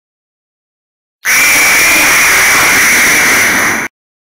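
A loud, harsh rush of noise with a steady high whine running through it, cut in abruptly about a second in and cut off just as sharply about two and a half seconds later.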